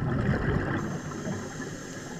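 Underwater bubbling and gurgling from scuba regulator exhaust, fading gradually, with a faint high steady tone in the second half.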